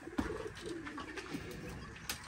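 Pigeon squabs crying in a wooden nest box, their calls a sign that they are very hungry, with a light knock near the start.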